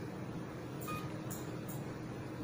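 HIFU machine giving one short electronic beep about a second in, over a steady low hum.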